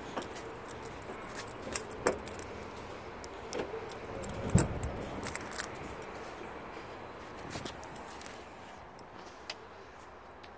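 Car keys and fob jangling in the hand, with scattered sharp clicks, and a heavier clunk about halfway through as the SUV's door is unlatched and swung open.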